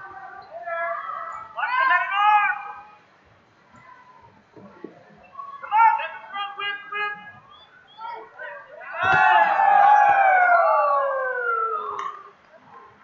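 People yelling at a wrestling bout: several loud, drawn-out shouts. The longest starts about nine seconds in and slides down in pitch over about three seconds.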